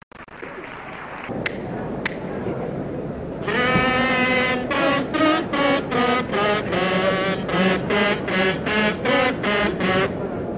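Carnival kazoos (pitos) played in unison: a buzzy, nasal melody in short notes, starting about three and a half seconds in. Crowd noise and a couple of clicks come before it.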